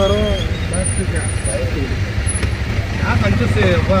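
Auto-rickshaw engine running with a steady low drone, heard from inside the open passenger cabin, with voices talking over it near the start and again near the end.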